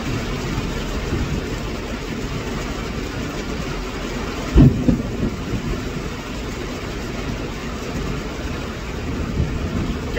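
Heavy rain falling steadily on the roof of a parked truck, heard from inside the cab, with one short loud low thump about halfway through.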